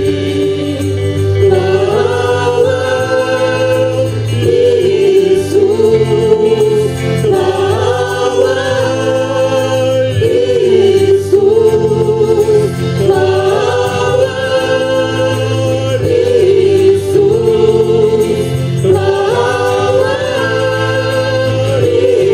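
Live religious song: singing over a small band's accompaniment of accordion and guitars, with long held notes over a steady bass line.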